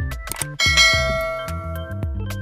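Background music, with a bright bell chime struck about half a second in that rings on and slowly fades.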